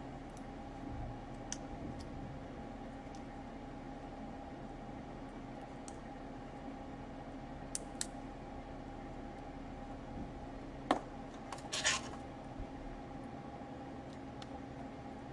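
Sparse small clicks and light scratching of fingers handling parts inside an opened laptop, with a sharper click and a short scrape near the end, over a steady low hum.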